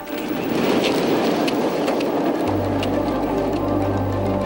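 Rushing noise with light rattling as the human-powered aircraft begins its takeoff run on the runway; about two and a half seconds in, background music with a low steady drone comes in over it.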